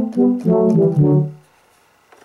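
Korg Kronos playing the imported Yamaha DX7 'BRASS 3' FM patch on its MOD-7 engine, dry with no effects: a short phrase of several synth-brass notes that dies away about a second and a half in.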